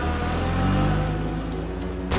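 A police jeep's engine revs up as the vehicle pulls away, rising in pitch through the middle, under background music.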